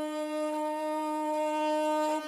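Iraqi Bedouin rababa, a one-string spike fiddle, bowed on a single steady held note.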